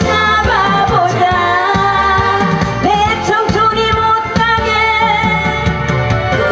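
A woman singing a Korean trot song live into a handheld microphone, her voice wavering with vibrato, over an instrumental accompaniment with a steady beat.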